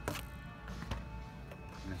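Quiet background music under the aisle hum, with two sharp clicks: one at the start and another about a second in, from plastic blister-packed die-cast cards knocking on metal peg hooks as they are handled.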